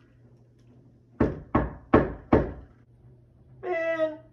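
Four knocks on a door, evenly spaced a little under half a second apart.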